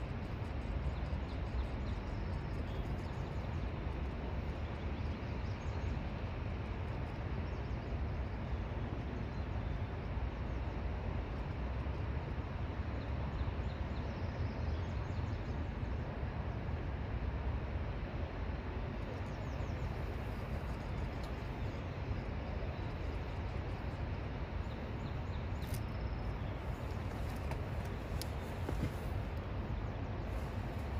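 Steady outdoor riverside ambience: a constant rushing noise with a deep rumble, typical of a wide river flowing below a dam. A couple of faint short ticks come near the end.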